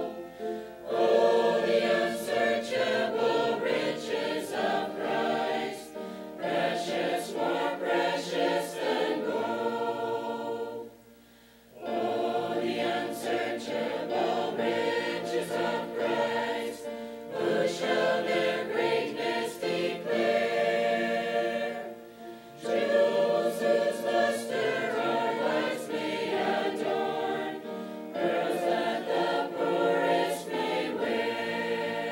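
Mixed church choir of men and women singing, phrase after phrase, with a short break about eleven seconds in and a brief dip about twenty-two seconds in.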